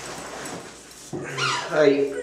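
Rustling and knocking of a webcam being handled and set in place, then a man's drawn-out, sing-song "hi" whose pitch slides, starting about a second in.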